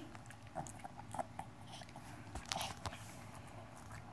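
Small dog chewing and crunching a dog treat: faint, irregular crunches and clicks.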